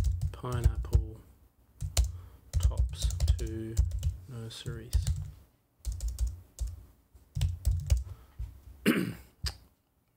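Typing on a computer keyboard: runs of key clicks with short pauses between them.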